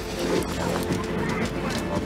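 Background music with a voice and a few sharp clattering sounds laid over it.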